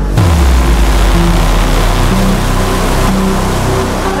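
Melodic techno in a DJ mix: a hissing noise wash comes in suddenly with a deep bass note sliding down, over sustained bass and synth notes. The top of the hiss thins out about three seconds in.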